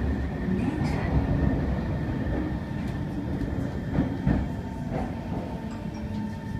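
Kawasaki C151 metro train heard from inside the car, a steady low rumble of wheels on rail with scattered sharp clicks. The rumble eases a little as the train slows into a station.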